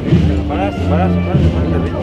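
Wind band playing, its low brass holding long steady notes, with men's voices talking close by over it.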